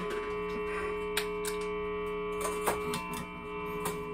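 Quiet opening of a free improvisation for electric guitar and drum kit: several steady sustained tones held throughout, with a few light taps and clicks scattered over them.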